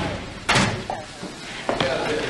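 A metal locker door slamming shut about half a second in, followed by a lighter knock a little over a second later.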